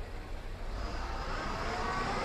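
A motor vehicle's engine running over a steady low rumble, with a tone that rises slowly from about a second in, as when the vehicle picks up speed.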